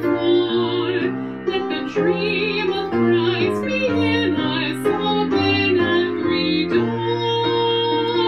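A woman singing a hymn verse with grand piano accompaniment, the voice carrying a light vibrato over chords that change about once a second.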